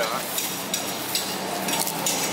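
Large knife working raw tuna on a wooden chopping block: a run of short, crisp scrapes and taps, roughly three a second, over a steady background hiss.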